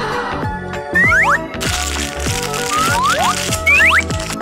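Upbeat children's background music with a steady beat, overlaid with cartoon-style rising whistle swoop sound effects in two quick clusters, about a second in and again near the end.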